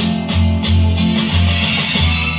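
Music with a steady beat and bass line, played back from a cassette on a Bang & Olufsen Beocord 5500 cassette deck through a Beomaster 5500 amplifier and heard from its loudspeakers in the room.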